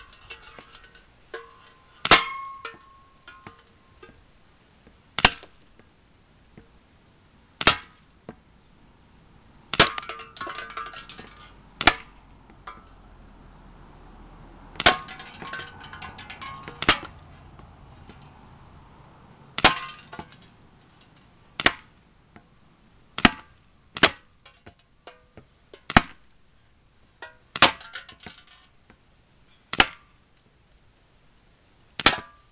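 Airsoft pistol firing about fourteen single shots, one every one to three seconds, at hanging aluminium soda cans. Several shots are followed by a short metallic clink and rattle as the BB strikes a can.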